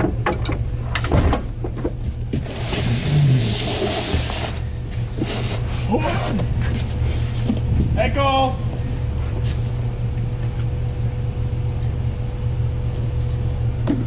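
A Jeep's engine idling steadily, a low continuous hum. About three seconds in comes a burst of rustling handling noise, and near the middle a person yells from a distance.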